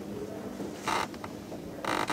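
Quiet room sound with a steady low hum, broken by two brief noises, one about a second in and one near the end.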